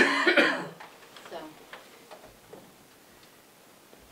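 A person coughing, a short, loud burst under a second long, followed by a quiet spoken word.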